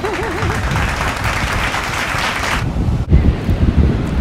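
Applause, a dense patter of clapping with a short warbling tone at the start, stopping abruptly about two and a half seconds in. After that, wind buffets the microphone, with surf behind it.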